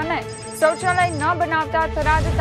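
A woman reading the news over a steady background music bed, with a brief high ringing tone in the music from about a third of a second to just past one second in.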